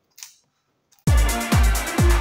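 A single short snip of scissors cutting through a clear plastic blister pack, then, about a second in, electronic dance music with a heavy kick drum about twice a second comes in and dominates.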